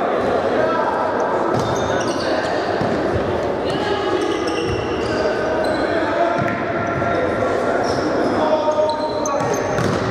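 Futsal ball being kicked and bouncing on an indoor sports-hall floor, with short high squeaks of shoes on the court and players calling out, all echoing in the hall.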